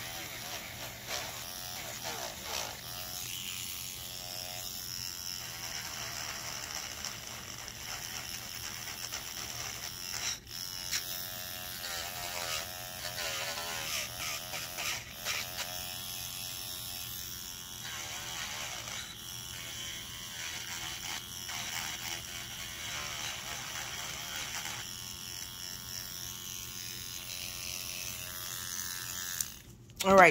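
Small pen-style rotary tool running at high speed with a sanding bit, grinding the sharp corners off cured UV-resin earrings; its whine wavers in pitch as the bit bears on the resin. It stops just before the end.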